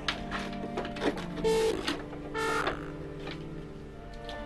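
Light, irregular clicking of typing on a laptop keyboard over a steady held background tone. Two short pitched tones about a second apart, near the middle, are the loudest sounds.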